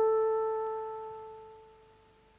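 Background music: one held brass note slowly fading away to near silence.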